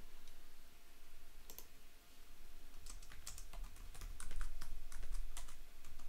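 Typing on a computer keyboard as a short line of code is entered: a single key click about a second and a half in, then a quick run of keystrokes from about three seconds in until shortly before the end.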